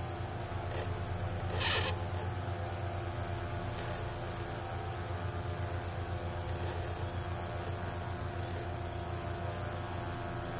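Steady, high-pitched chorus of field insects with a fainter chirp repeating at an even pace beneath it. A brief louder sound cuts in about a second and a half in.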